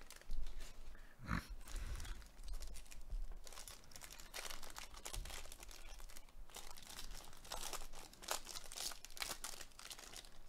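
Foil wrapper of a Topps baseball card pack being torn open and crinkled in an irregular run of crackles, with one soft bump about a second and a half in.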